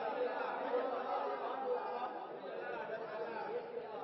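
An audience of men talking among themselves: many overlapping voices in a low, steady murmur, with no single voice standing out.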